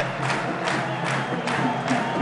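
Steady din of a crowd in an indoor handball hall, fans' noise with no distinct cheer or whistle standing out.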